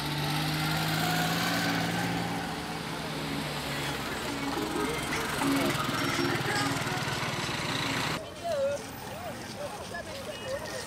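Small engine running steadily close by amid street noise. It cuts off abruptly about eight seconds in, leaving voices.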